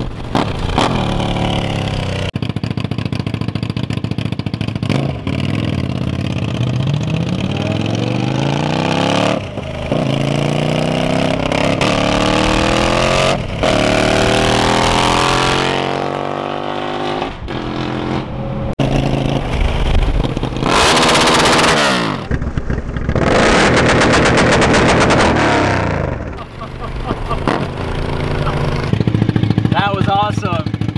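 Suzuki TL1000R V-twin motorcycle accelerating hard through the gears, heard from a following car: the engine note rises in pitch and drops back at each shift, again and again. There is a louder, harsher stretch about three-quarters of the way through.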